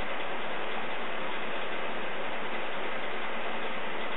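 A steady, even hiss of background noise, unchanging throughout, with no other distinct sound.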